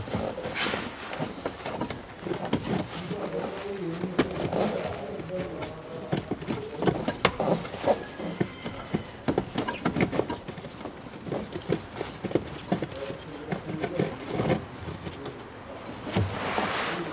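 A frameless carbon cabin air filter being worked by hand into its plastic housing: irregular rustling and scraping of the pleated filter against plastic, with many small clicks and knocks.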